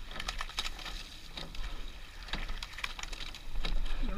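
Rowing shell underway: a scatter of small clicks and knocks from the oars turning in their oarlocks and the boat's fittings, over a low steady rumble on the microphone.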